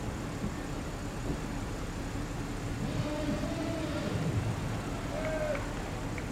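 Car engines idling with a steady low rumble and hum. From about halfway through, distant voices call out over it.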